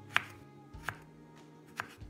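A broad-bladed kitchen knife slicing ivy gourd (tindora) on a wooden cutting board: three sharp knocks of the blade hitting the board, a little under a second apart, the first the loudest.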